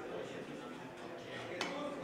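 A single sharp click of a carom billiards shot about one and a half seconds in, ivory-hard balls and cue in play on a three-cushion table, over a low murmur of voices in the hall.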